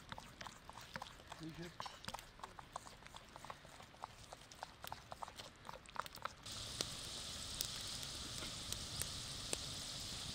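Wet squelching and clicking of a wooden spoon stirring and mashing chopped tomato salsa in an earthenware bowl. About six and a half seconds in, it gives way abruptly to a steady sizzle with scattered crackles: potato chips deep-frying in hot oil in a pan over a wood fire.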